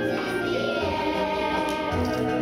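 A group of children singing a song together in unison over musical accompaniment, holding sustained notes.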